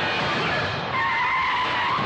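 A bus braking hard with its tyres skidding: a high, sustained squeal starts about halfway through, over film background music.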